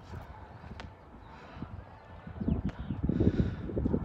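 Footsteps on pavement as someone walks with the recording phone, with wind noise on the microphone. Both grow louder about halfway in.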